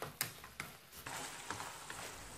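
Wooden chopsticks clicking and scraping against a metal wok as duck pieces and ginger are stirred: a few scattered clicks over a faint sizzle of the sauce cooking down.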